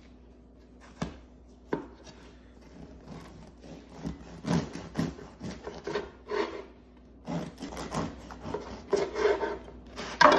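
Serrated bread knife sawing through the thick, crusty crust of a sourdough loaf on a wooden cutting board, a rasping stroke about every half second that grows louder from about four seconds in. Two sharp knocks come first, about a second in.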